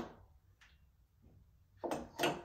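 Mostly quiet room with faint handling of a sheet of paper being laid over the resin printer's LCD screen. A short click comes right at the start and a louder rustle near the end.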